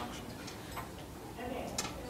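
Faint, indistinct talk with a few sharp clicks, the loudest shortly before the end.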